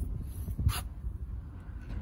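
Low, uneven handling rumble from a handheld phone being carried and swung around a car's cabin, with one sharp knock about two-thirds of a second in.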